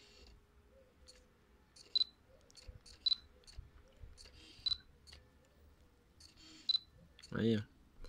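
A Fujifilm X-Pro1 with an XF 35mm f/1.4 lens, autofocus triggered again and again: four short clicks, each with a brief high beep, and a faint hum between them.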